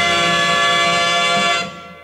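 The closing held chord of a Greek pop song played from a 45 rpm vinyl single. It holds steady, then dies away about one and a half seconds in as the record ends.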